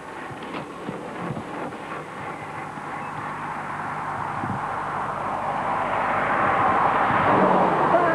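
Rushing road noise of a motor vehicle approaching along the road, growing steadily louder.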